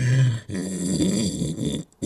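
A man laughing in a deep voice: a short low grunt, then a longer chuckle that wavers up and down in pitch.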